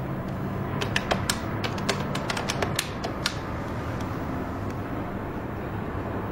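Push-button desk telephone being dialled: about a dozen quick, irregular clicks of the keys over roughly two and a half seconds, ending about halfway through. A steady low hum of room tone runs under it.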